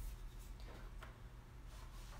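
Scissors trimming excess fabric: a few faint, short snips over a quiet room.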